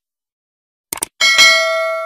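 Subscribe-button animation sound effects: a quick double mouse click about a second in, then a notification bell ding whose several clear tones ring on and slowly fade.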